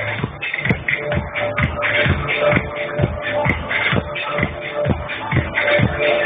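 Electronic dance music from a DJ set played over a festival sound system: a steady four-on-the-floor kick drum at a little over two beats a second under a held synth note. It is recorded loud and dull-toned, with the highs cut off.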